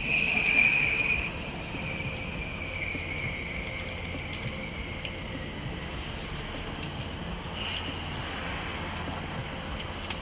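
Crickets chirring in a steady high-pitched drone, loudest in the first second, over the low hum of an idling vehicle engine.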